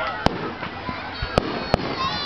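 Aerial fireworks shells bursting in sharp bangs, one shortly after the start and two more close together about a second and a half in.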